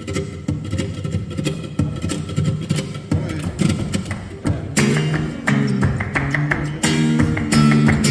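Flamenco guitar playing a tangos introduction, plucked and strummed notes over a steady rhythm. About halfway through, hand clapping (palmas) comes in sharply on the beat.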